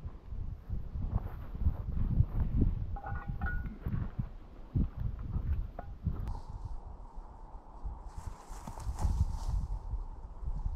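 Wind buffeting the microphone in uneven low gusts, with scattered faint knocks. About three seconds in there are a couple of short high notes, and in the second half a faint steady high tone.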